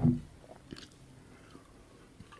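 A pause in a man's spoken lecture: the end of his last word right at the start, then a near-quiet gap with a few faint mouth clicks.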